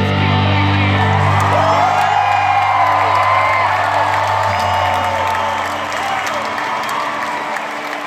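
A rock band's closing chord rings out on guitars and bass and fades away about halfway through, while the crowd cheers and whoops.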